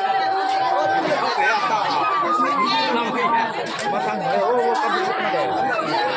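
Bamboo side-blown flute playing long held notes, moving up to a higher note around the middle and back down, over many people talking.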